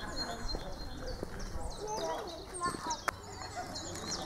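Small birds chirping repeatedly in the trees, with people's voices talking in the background and one sharp click about three seconds in.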